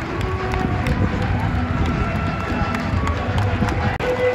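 Football stadium crowd noise, a dense mass of voices with scattered handclaps, with music playing.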